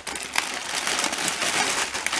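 Bubble wrap and clear plastic bags of building bricks crinkling and crackling as hands rummage through them and lift a bag out.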